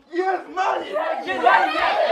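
A group of people shouting and cheering together, many voices at once, breaking out suddenly just after the start and staying loud.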